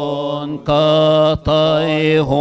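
Male chanting of a Coptic Orthodox hymn in slow, drawn-out melismatic style, holding long notes that are broken twice by brief pauses.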